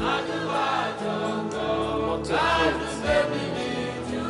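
Gospel choir singing over a sustained instrumental backing.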